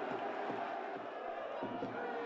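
Football stadium crowd noise, a steady din of cheering and chatter.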